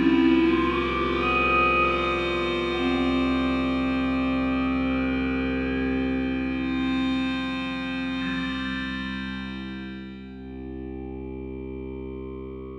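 Kyma synthesized 'singers' sound through a vocal-formant filter: several sustained pitched tones layered into a thick, buzzy chord, played live from an iPad multi-touch controller. A tone slides upward within the first couple of seconds, and the sound softens and darkens in the last two seconds.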